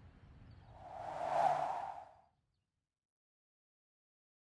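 A single whoosh swelling up and fading away over about a second and a half, after which the sound cuts to silence.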